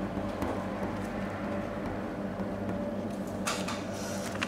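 Pen scratching on paper in short strokes as numbers are written and underlined, the strokes clearest near the end, over a steady low hum.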